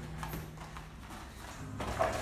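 Footwork on a padded gym mat during light kickboxing sparring: scattered soft steps and taps of gloves and shin guards, with a louder strike starting near the end, over a low steady room hum.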